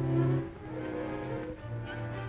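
Orchestral film score with low bowed strings holding sustained notes. The harmony shifts about half a second in, and a new low note enters near the end.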